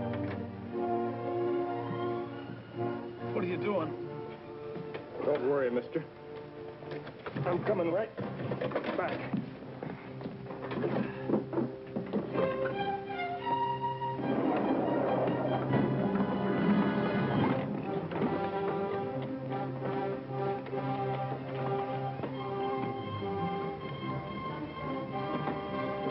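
Orchestral film score with held, sustained chords playing through a fight scene, with men's shouts and a noisy stretch of commotion about halfway through.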